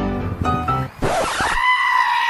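Piano background music with light plucked notes that breaks off about a second in. A sudden burst of noise follows, then a long, shrill, high-pitched scream-like cry held on one note.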